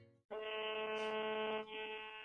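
A steady, buzzy electronic tone from the smartphone as the call to the SIM800 module connects. It breaks off briefly about a second and a half in, then resumes and fades.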